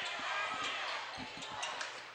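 Basketball dribbled on a hardwood gym floor, several bounces, over a background of crowd chatter.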